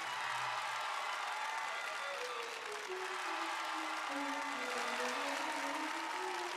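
An audience applauding over background music: a slow melody of long held notes that falls and then rises again.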